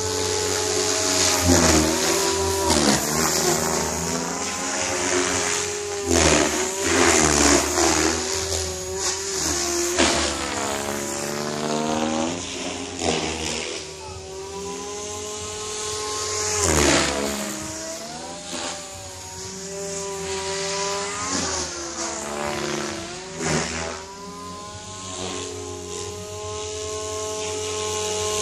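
Goblin 500 electric RC helicopter flying 3D manoeuvres: the whine of its Compass Atom 500 motor and the buzz of its main rotor swoop up and down in pitch again and again. It is loudest about two seconds in, around seven seconds, and again around seventeen seconds.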